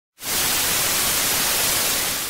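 TV static sound effect: a steady hiss of white noise that starts a moment in.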